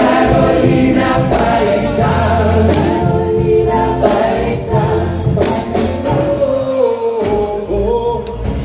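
A live band and a group of singers perform a song in several voices over bass and drums, with the audience singing along. The bass and drums drop away briefly near the end before the music picks up again.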